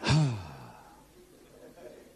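A man's short sigh-like vocal exclamation into a handheld microphone. It starts loud, falls in pitch and fades away within about half a second, leaving quiet room tone.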